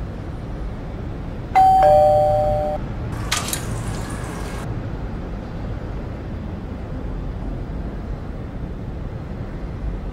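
Two-note doorbell chime, a high then a lower ding-dong, sounding about one and a half seconds in after a dog presses the push button with its paw. A short noisy burst follows about a second after the chime dies away, over a steady low background hum.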